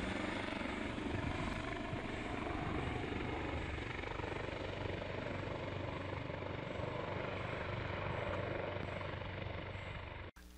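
Fire rescue helicopter flying overhead, its rotor and turbine engine running steadily, easing off slightly near the end as it moves away.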